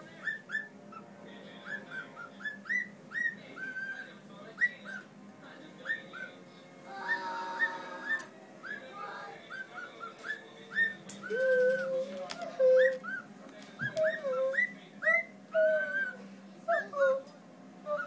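Pet cockatiel whistling a learned tune, a quick run of short rising whistle notes. From about eleven seconds in, a lower, longer whistled line joins the bird's higher notes.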